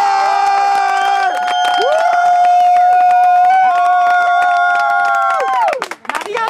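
Spectators cheering a goal: several voices screaming in long, high held shouts that overlap, one drawn-out yell standing out above the rest, all trailing off near the end.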